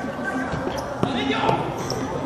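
Futsal ball kicked and striking a wooden gym floor: a couple of sharp thuds about a second in and half a second later, over players' voices echoing in a large hall.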